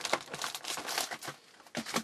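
Foil card-pack wrappers crinkling and rustling as the packs are handled and lifted out of a cardboard box, easing off into a brief lull with a single light knock near the end.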